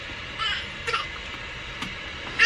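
Two short, high-pitched vocal squeals about half a second apart, over a steady background hum.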